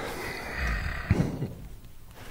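A short, low voiced sound from a person, like a grunt or hum, about a second in, over faint room noise.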